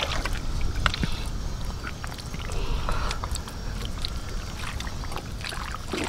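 Hands digging and pulling in wet tidal mud around a buried bamboo trap tube: squelching with scattered small clicks, over a steady low rumble.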